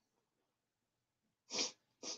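Two short, sharp breaths through the nose, about half a second apart, in an otherwise quiet room.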